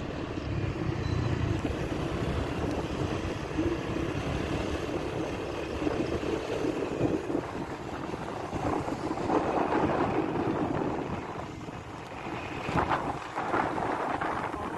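Wind buffeting the microphone on a moving motor scooter, over the running of small scooter engines, rising and falling unevenly.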